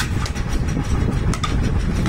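A few light knocks of small plywood sample pieces being set down and slid on a stone tabletop, over a steady low rumble.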